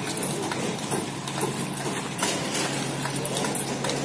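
Footsteps of a group of people walking on a dirt road, many irregular short steps overlapping, over a steady low hum.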